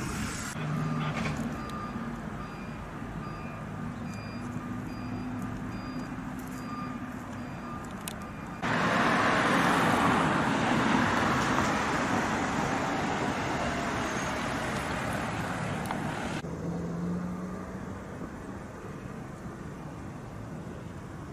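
Outdoor vehicle sound, with a high electronic beep repeating steadily through the first eight seconds, typical of a truck's reversing alarm. A loud, steady hiss of noise then comes in suddenly, lasts about eight seconds and cuts off, leaving a lower engine hum.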